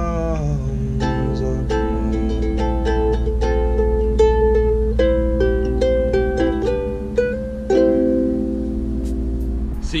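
Kohala beginner's ukulele being fingerpicked: a run of single plucked notes and chords, after the tail of a sung note at the very start. The picking thins out near the end.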